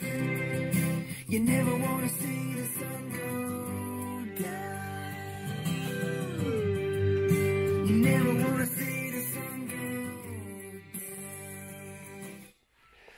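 Guitar music with long, sliding notes played back through a pair of TSM hi-fi loudspeakers and picked up from the room.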